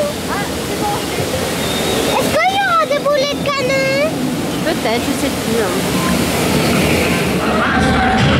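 Steady rushing water of the Pirates of the Caribbean boat ride's flume. About two and a half seconds in, a voice calls out for over a second in long, wavering tones that rise and fall.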